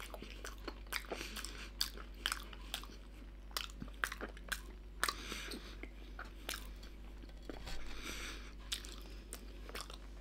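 A person chewing mouthfuls of oven-baked Findus Pommes Noisettes potato balls, with irregular clicks and smacks of the mouth close to the microphone.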